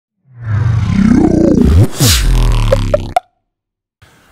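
Short electronic intro sting: deep bass with pitch sweeps and a whoosh, then three quick blips about three seconds in, after which it cuts off suddenly.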